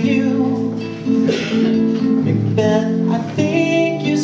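A man singing long held notes over a strummed acoustic guitar, a live folk-rock song.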